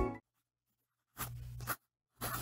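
Background music cuts off at the start. A little over a second in there is one short, scratchy stroke of a pen scribbling on paper.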